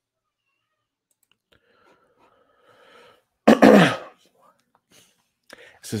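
A man sneezes once, close to the microphone, about three and a half seconds in.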